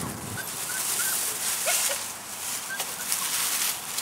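Puppies giving a handful of short, high squeaks, over a steady rustling of grass and handling noise.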